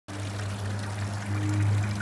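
Water jets from three OASE Quintet fountain units splashing and pattering back into a shallow lined basin, with a steady low hum underneath.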